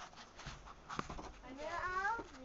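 A young child's wordless, wavering voice, rising in pitch, starts in the last half second. Before it, a single sharp knock about a second in.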